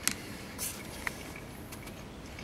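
Faint clicks of a metal spoon against a plastic meal tray: a sharp one just after the start and another about a second in, with a brief soft noise between and a few tiny ticks near the end.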